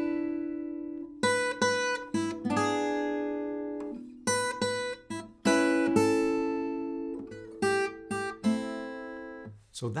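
Fingerpicked flat-top acoustic guitar playing a blues melody over the thumb's bass notes. It plays three short groups of quick plucked notes, and each group lands on a chord that rings out and fades.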